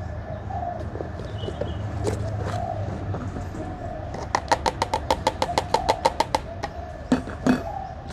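A plastic tub tapped rapidly against a small glass jar, a quick run of about twenty sharp clicks over two seconds in the middle, with a few louder knocks after it. Doves coo in the background.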